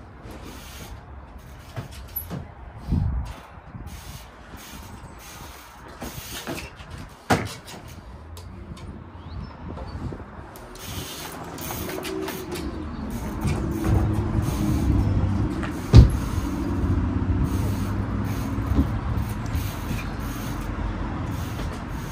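Bike tyres and frame knocking on wooden pallets during trials hops, with one sharp, loud impact about two-thirds of the way in. Under it, from about halfway, the low engine drone of road traffic builds and holds.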